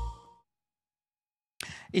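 The last held note and bass of a news intro jingle die away within the first half-second, followed by about a second of dead silence. A short intake of breath near the end leads into a man's voice starting to speak.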